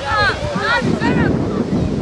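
Wind buffeting the microphone with a steady low rumble, while raised voices call out in short, high shouts a few times.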